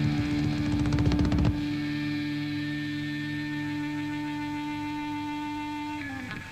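Punk rock band live, starting a song: a fast burst of rapid drum hits and guitar for about a second and a half, then a single electric guitar chord left ringing and slowly fading for several seconds.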